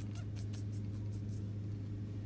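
Steady low hum of a shop's background, with a quick run of light clicks, about four a second, over the first second and a half.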